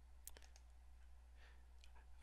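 Faint clicks of a computer mouse button, two close together just after the start and a fainter one near the end, over quiet room tone with a low steady hum.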